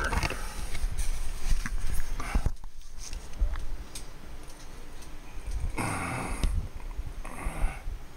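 Handling noise: rubbing and knocking of a 3D-printed plastic gauntlet being fitted onto a forearm while the recording device is moved about. Near the end there are two short breathy sounds.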